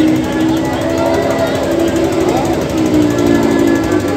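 Stunt vehicle engines at the bottom of a well-of-death arena, running with a rapid putter and rising and falling a little in pitch, with voices mixed in.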